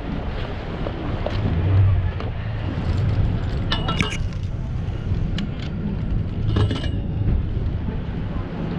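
Wind rumble on the microphone and road noise from a bicycle ridden along a sidewalk, with short metallic rattles and clinks from the bike about four seconds in and again near seven seconds.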